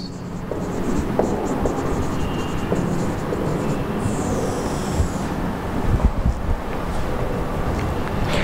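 Steady rumbling background noise with a few soft thumps, and faint squeaks of a marker writing on a whiteboard about four seconds in.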